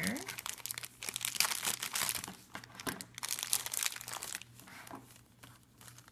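A shiny black plastic blind-box bag crinkling and crumpling in the hands as it is opened, a quick run of crackles that is busiest in the first three seconds and grows fainter toward the end.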